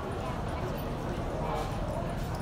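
Indistinct background voices, too unclear to make out words, over a steady low rumble.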